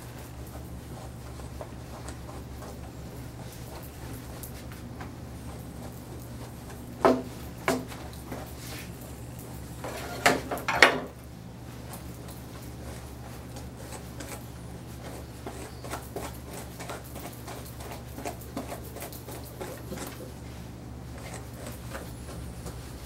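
Faint scratching and light clicks of a dog brush being worked through a poodle's coat, with a few sharper clinks of grooming tools about 7 seconds in and again around 10 to 11 seconds, over a steady low hum.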